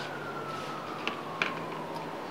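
A faint single tone gliding slowly downward in pitch, like a distant siren winding down, over quiet room hiss. Two light clicks come a little after a second in.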